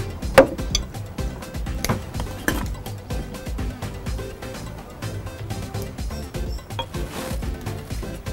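Background music running throughout, with a few sharp knocks and clinks of glass jars and a blender jug set down on a wooden table, the loudest about half a second in and two more around two seconds in.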